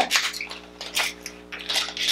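A few small plastic clicks and rustles as a chunky lip liner crayon is picked up and handled, over a faint steady hum.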